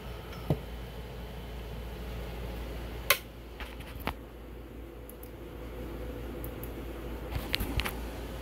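Steady low hum and hiss of a workbench room with a faint steady tone, broken by a few sharp clicks: one about half a second in, two around three and four seconds in, and a quick cluster near the end.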